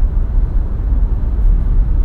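Cabin noise of a moving car: a steady low rumble of road and engine.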